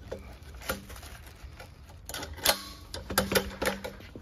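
Metal handle tubes of a pressure washer frame being slid together: a series of sharp metal clicks and knocks, the loudest about two and a half seconds in, as the slide-on handle is pushed home and its detent buttons lock it in place.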